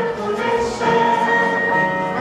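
An ensemble of stage performers singing together in chorus with musical accompaniment, holding long notes.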